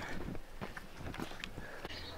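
Faint footsteps on cobblestone paving: a series of soft, irregular steps.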